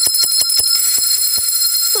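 Brass hand bell with a wooden handle shaken by hand, ringing continuously with rapid clapper strikes several times a second.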